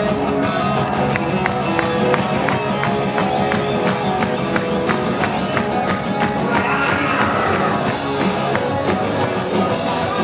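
Rock band playing live through a PA, led by amplified electric guitars over a steady ticking beat, recorded from among the audience. A brighter hiss comes in about two seconds before the end.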